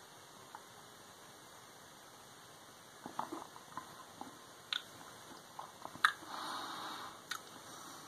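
Quiet mouth sounds of a person tasting a sip of imperial stout: little is heard at first, then faint lip smacks and tongue clicks from about three seconds in, with a soft breath out near the end.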